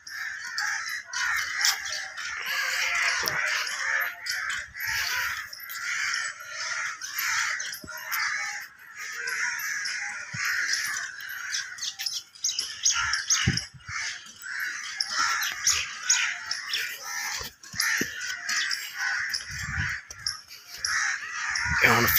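Crows cawing continually in a dense chorus, with other birds calling among them.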